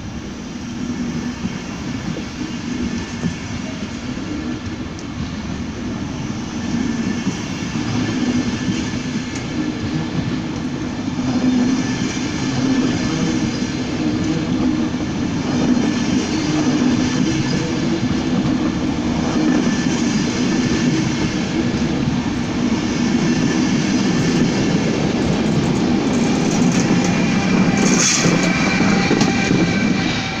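Railjet passenger coaches rolling slowly past on the rails, a steady rumble of wheels that grows louder. Near the end a steady whine joins as the train's Taurus electric locomotive draws level.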